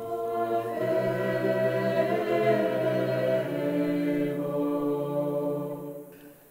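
Background music of a choir singing long held notes that change only a few times, fading out near the end.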